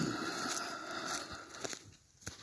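Footsteps rustling and crunching through dry fallen leaves, dying away near the end, with a short falling swoop at the very start.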